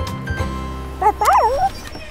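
Children's cartoon background music. About a second in, a short, wavering, animal-like cartoon cry, loud and rising and falling in pitch, sounds over it.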